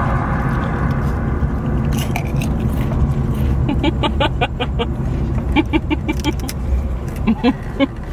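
Steady road and engine rumble inside the cabin of a moving car. About halfway through, a run of quick, light clicks comes in and goes on for a few seconds.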